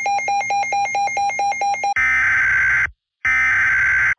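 Weather-radio alert tones: a rapid electronic beeping alarm, about seven beeps a second, then from about two seconds in two harsh buzzing bursts, each just under a second, with a short gap between. The bursts are the kind of data header that starts an Emergency Alert System or NOAA weather radio warning.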